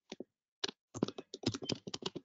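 Typing on a computer keyboard: quick, irregular keystrokes, a few at first and then a faster run in the second half.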